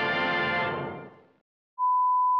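Music fading out over about a second, a short silence, then a steady 1 kHz test-tone beep starting near the end: the television test signal that goes with colour bars, marking a broadcast interruption.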